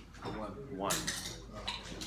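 A word spoken by a man's voice, with a few light clinks or taps, one about halfway through and one near the end.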